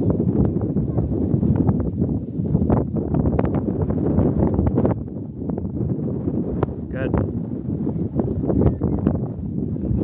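Wind buffeting the camera microphone: a loud, steady low rumble with uneven gusts and short crackling spikes.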